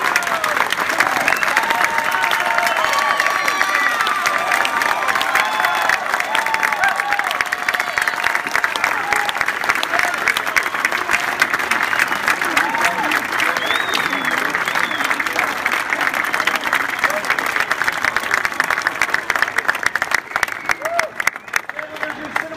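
Large audience applauding steadily, mixed with cheers and shouts during the first several seconds; the clapping thins out near the end.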